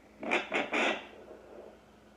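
Handheld home fetal Doppler's speaker giving three short, loud bursts of whooshing static in quick succession within the first second, as the probe searches over the gel-covered belly for the heartbeat.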